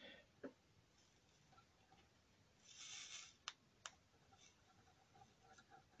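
Near silence: a faint brief hiss about halfway through, then two faint clicks in quick succession.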